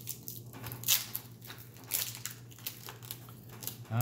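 Foil booster-pack wrapper crinkling and being torn open, a run of irregular small crackles and clicks over a low steady hum.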